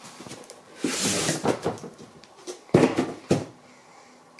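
A cardboard shipping box being unpacked by hand: a papery scrape and rustle about a second in as the inner box slides out, then two sharp knocks near the end as the boxes are set down.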